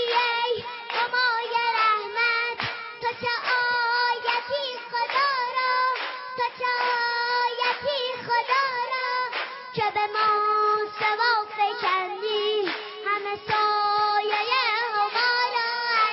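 Intro music: a high voice sings a flowing, ornamented melody over a held drone note, with sharp percussive strikes throughout.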